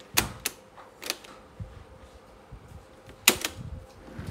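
Piano-key transport buttons of a vintage cassette deck clicking as they are pressed and released: a pair of sharp clacks at the start, another about a second in, and a louder pair just after three seconds, over a faint steady hum.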